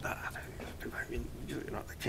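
Faint, half-whispered speech: a man's voice dropping to a low murmur between sentences.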